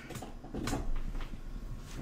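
Handling noise of a person moving about close to the microphone: a low rumble with several light knocks and rustles.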